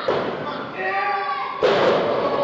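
Wrestling ring taking body impacts: a sharp thud at the start and a louder slam on the mat near the end, ringing in a large hall. Shouting voices in between.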